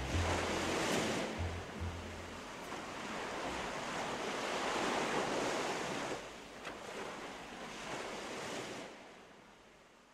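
Sea waves washing in and drawing back in about three slow surges, fading out near the end. The last low notes of background music sound under the first two seconds.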